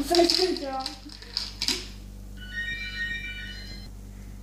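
A short burst of children's voices, then a steady, high-pitched organ-like chord held for about a second and a half before it stops.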